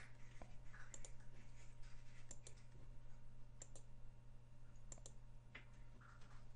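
Faint scattered clicks of a computer mouse and keyboard, some in quick pairs, over a low steady hum.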